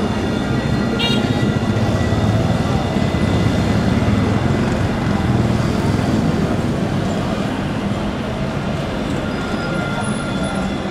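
Alstom Citadis electric tram passing at close range: a steady low rumble and hum from its motors and wheels on the rails, easing slightly near the end, with voices of people in the street mixed in.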